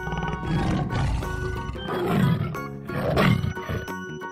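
Tiger roaring and growling in several rough swells, over background music.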